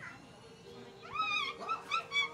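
A young child's high-pitched squealing voice, starting about halfway in, with short bending cries over a faint steady hum.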